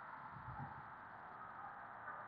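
Faint, steady outdoor background noise with no distinct event.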